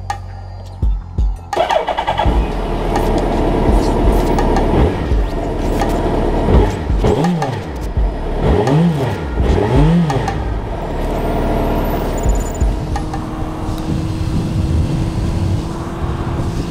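2009 Suzuki Hayabusa's inline-four engine starting about a second and a half in, then idling and revved three times in quick rising-and-falling blips, with background music.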